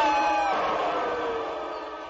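Orchestral film score: a held chord with a single line sliding downward, the whole thing fading away.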